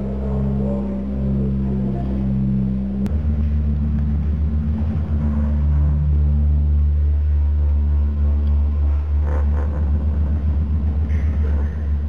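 Deep electronic bass drone from a handmade sound-art coffee table driven by a subwoofer and circuit-bent electronics, several low tones held together. About three seconds in, after a click, it switches to a lower, heavier drone that throbs rapidly at times.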